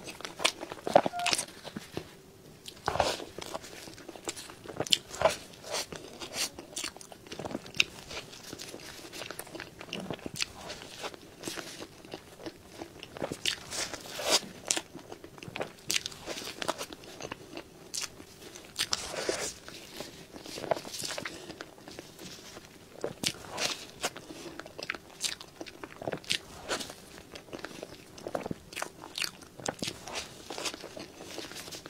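Close-miked eating: a person biting and chewing soft cream-filled roll cake and chocolate-glazed cake, with a steady, irregular run of sharp mouth clicks and smacks.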